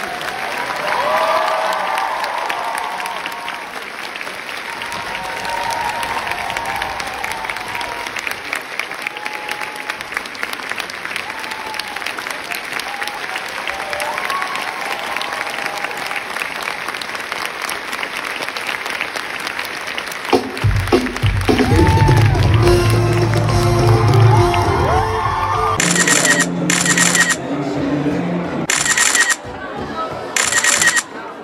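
Theatre audience applauding and cheering during a curtain call, with scattered whoops over the clapping. About twenty seconds in, music comes in loudly and takes over.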